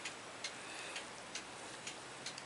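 Faint, regular ticking, a little over two ticks a second.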